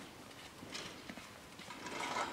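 Faint footsteps crunching on packed snow, two people walking at an unhurried pace.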